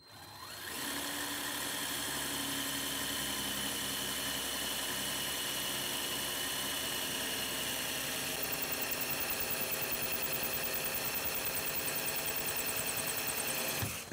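18-volt cordless drill running steadily with an ARTU multi-purpose carbide-tipped bit boring into a marble tile. It builds up over the first second and takes on a fast, even flutter about eight seconds in.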